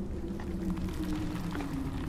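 Low, suspenseful film-score drone: a sustained tone slowly sliding down in pitch over a dark rumbling bed, with faint scattered clicks.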